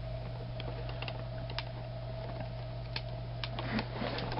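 A steady low hum with a faint higher steady tone, and irregular light clicks scattered through it, a few more of them near the end.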